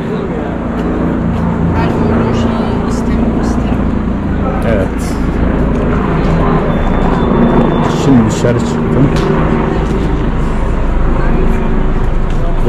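Busy city street ambience: passers-by talking in the background over a steady rumble of road traffic.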